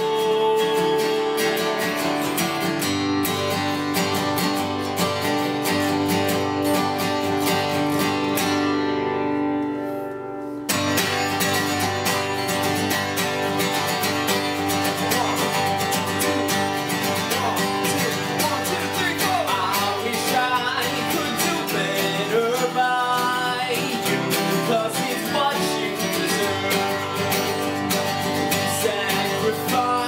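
Two steel-string acoustic guitars strummed together, with a voice singing over them in places. The playing thins briefly and comes back in full about ten seconds in.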